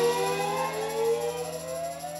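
A live blues band's closing chord ringing out and fading, with a sustained note sliding slowly upward in pitch over it.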